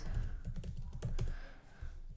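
Typing on a computer keyboard: a quick run of keystrokes that thins out near the end.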